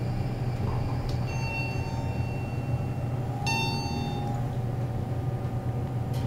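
Montgomery hydraulic elevator cab travelling between floors, with a steady low hum. Two short high tones sound, about a second in and again about three and a half seconds in.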